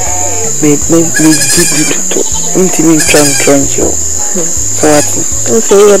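Crickets chirping in a steady high-pitched drone that runs without a break under spoken dialogue.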